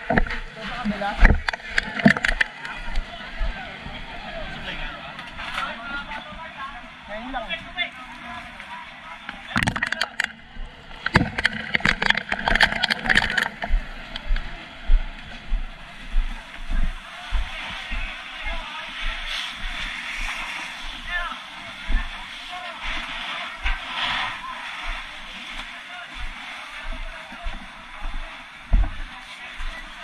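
Busy fire-scene ambience: background chatter of firefighters and bystanders, water sloshing on a flooded street, and frequent low thumps of footsteps and gear. There are loud rushing bursts of water or spray at about ten seconds and again around twelve to thirteen seconds.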